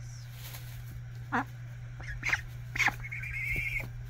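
Goslings peeping: a couple of short high peeps, then a rapid trilling peep held for under a second near the end.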